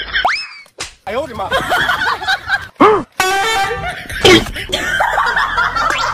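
Comedy sound effects mixed with laughter and voices: a quick rising pitch glide just after the start, a boing-like rise and fall in pitch about three seconds in, and a loud hit a little past four seconds.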